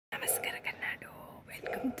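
A woman's soft, breathy, whispered voice, then she starts to speak near the end.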